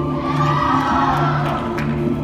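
Recorded show music played over loudspeakers in a gym, with an audience cheering and whooping that swells up about a quarter second in and dies away near the end.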